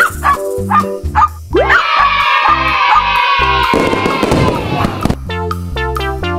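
A dog's long howl: one high call that rises sharply, holds and sinks slowly for about two seconds, then breaks into a rough rasping noise for about a second, over bouncy children's background music with a steady beat.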